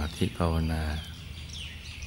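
A man's voice in the first second, then birds chirping in the background: a few short, high, rising and falling calls in the pause.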